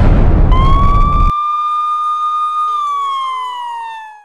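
Title-card sound effect: a loud burst of noise lasting about a second, then a single siren-like wail that rises slightly, holds, and slides down in pitch near the end as lower tones join in.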